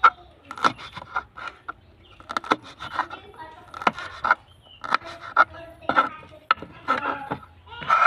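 Kitchen knife chopping red chili peppers on a wooden cutting board: irregular short knocks of the blade hitting the wood, about two a second.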